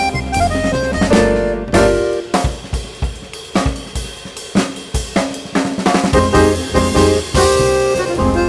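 Jazz quartet playing: button accordion and grand piano over double bass and drum kit, with the drums prominent, striking sharply and often throughout.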